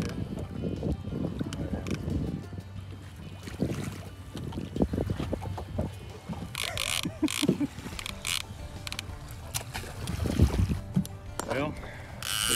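Wind on the microphone and choppy water lapping against a small boat's hull, with a few sharp knocks about four to five seconds in.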